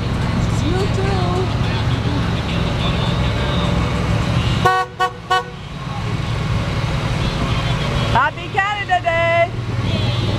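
Parade vehicles' engines running as they roll past, with a vehicle horn giving three short toots about five seconds in.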